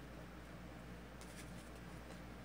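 Quiet room tone with a steady low hum, and a faint brief rustle of tarot cards being handled a little over a second in.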